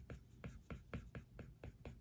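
Faint, rapid scratching and ticking of an Apple Pencil's plastic tip on an iPad Pro's glass screen as it is scribbled back and forth, about five or six strokes a second.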